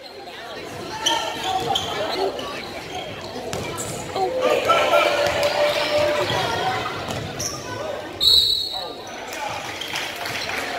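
Indoor basketball game: spectators' voices shouting throughout, a basketball bouncing on the hardwood court, and one short, loud referee's whistle blast about eight seconds in, the call that stops play for a foul and free throws.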